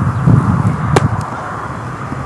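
Wind buffeting the microphone, a low unsteady rumble, with one sharp click about a second in.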